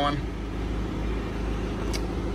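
Steady low background rumble with a faint hiss, with no distinct events.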